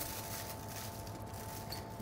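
Faint crinkling of aluminium foil as it is folded and pressed into small packets by hand, over a steady faint hum.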